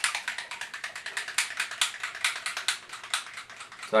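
Small plastic bottle of Createx Illustration yellow airbrush paint being shaken, giving a rapid, irregular clicking rattle.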